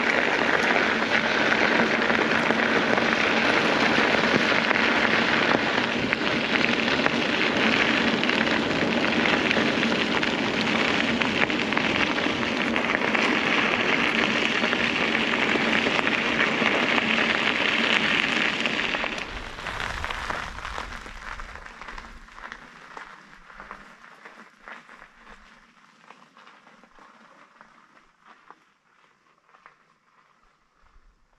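Bicycle tyres crunching over a gravel road while riding, a loud, steady rushing noise picked up by a handlebar-mounted camera. About two-thirds of the way through it falls away abruptly and then fades to faint outdoor quiet.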